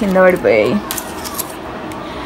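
A woman's voice briefly at the start, then foil blister packs of tablets crinkling and clicking as they are handled.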